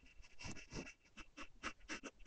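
Graphite pencil sketching on paper: quick, short scratchy strokes, about four a second, as light construction lines are drawn.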